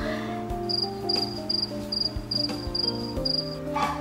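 A cricket chirping high and evenly, about eight short chirps at two to three a second from just before a second in until shortly before the end, over soft background music with held notes.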